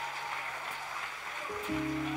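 A congregation applauding, with sustained keyboard chords held underneath. A new chord comes in about a second and a half in.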